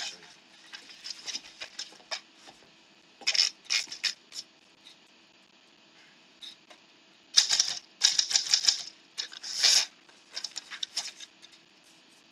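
Manual typewriter keys clacking in quick runs with short pauses between, as a test line is typed on paper that turns out to smudge. The busiest, loudest stretch of typing comes in the second half.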